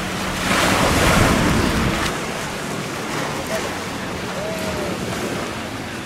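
Small waves breaking and washing up a shingle beach, with a louder surge about a second in, and wind buffeting the microphone.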